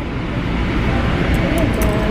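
Inside a moving passenger train car: a steady, loud rumble of the train running, with faint voices under it.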